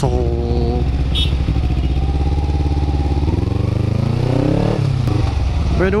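Kawasaki Ninja 250's parallel-twin engine running at low revs in slow traffic. A little past halfway it revs up smoothly for about a second and a half, then eases off again.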